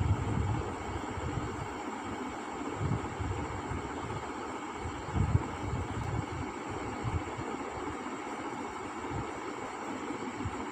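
Steady background hiss with a few soft low thumps from a sheet of drawing paper being handled and shifted on a table: one just at the start, one about three seconds in, and one a little after five seconds.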